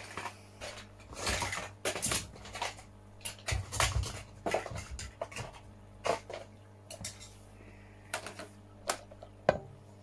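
Rummaging: hard objects being handled, shifted and knocked together in a run of irregular clicks, knocks and rustles, with the sharpest knock near the end. A faint steady hum runs underneath.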